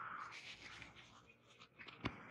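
Faint billiard-hall room sound: a soft scuff at the start, then scattered light ticks and scrapes.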